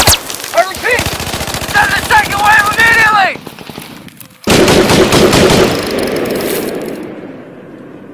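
Machine-gun fire sound effect: rapid, continuous bursts of shots with shouting voices over them. After a short lull, a sudden loud blast comes about halfway through and fades away over the next three seconds.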